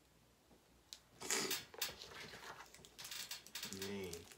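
Plastic packaging crinkling and crackling as it is handled, starting about a second in and going on in irregular bursts.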